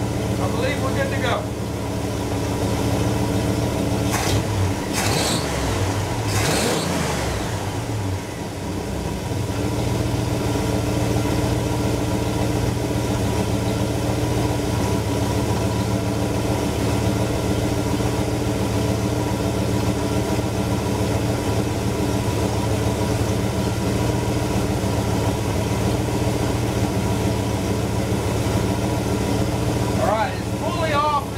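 1969 small-block Chevy 350 V8 with an Edelbrock four-barrel carburetor idling steadily while its idle is being set. A few brief sharper noises come about four to seven seconds in.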